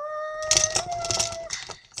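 Pens and pencils clicking and clattering as they are dropped into a fabric pencil case. Over the first second and a half a held, steady humming note sounds, stepping up a little in pitch partway through.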